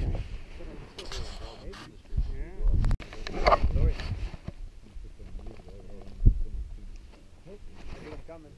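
Indistinct voices talking with a low rumble of wind on the microphone, and a single sharp thump about six seconds in.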